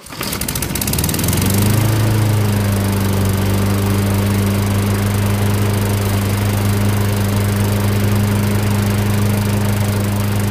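Mountfield Emperor petrol lawnmower engine pull-started on choke, catching on the first pull and revving up over about a second and a half, then running steadily.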